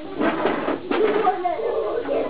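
Indistinct voices talking, with no clear non-speech sound standing out.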